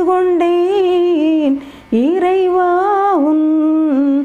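A woman singing a Tamil devotional hymn unaccompanied: two long held phrases with slight wavering, and a short breath between them about halfway through.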